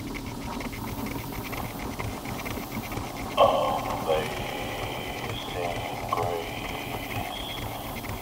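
Wind-up horn gramophone playing a record: surface crackle and needle ticks, then about three seconds in an old recorded voice starts up from the horn.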